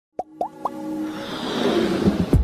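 Logo intro jingle: three quick plops, each sliding up in pitch, then a swell of music that grows louder.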